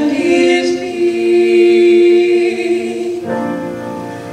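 Two teenage girls' voices singing a duet in close harmony, holding a long sustained note over piano accompaniment. A little after three seconds in the sound thins out as the held note fades.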